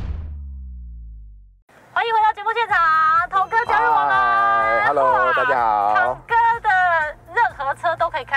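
The end of a TV show's logo sting: a low falling boom fades out over about a second and a half. After a short silence, lively speech from two people in a car fills the rest, over a steady low hum.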